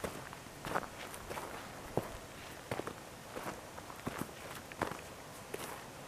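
Faint footsteps on loose rocky gravel, a step roughly every two-thirds of a second.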